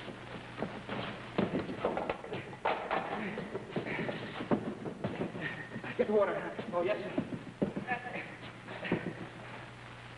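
A physical scuffle: repeated thuds, knocks and shuffling footfalls as people grapple, with short wordless vocal sounds from the struggle around the middle.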